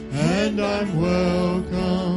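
A worship band of acoustic guitar, bass, drums and keyboard accompanying a man singing a hymn, his voice sliding up into a long held note over sustained chords.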